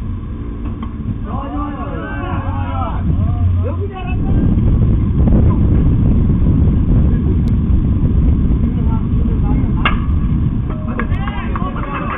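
Players' voices calling out across a baseball field, then a steady low rumble takes over. Just before ten seconds in comes one sharp crack of a bat hitting the ball, followed by more shouts.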